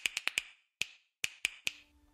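A run of about eight sharp, bright clicks at an uneven pace, several quickly together and then more spaced out, some with a short ringing tail: a clicking sound effect laid over a title card. A faint low steady hum begins near the end.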